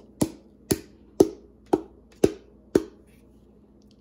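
A fluted tube pan full of cake batter knocked down on the table six times, about twice a second: small taps to settle the batter before baking.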